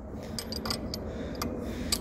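A few light metal clicks and ticks from a wrench turning a hose fitting clamped in a bench vise, spaced irregularly through the two seconds.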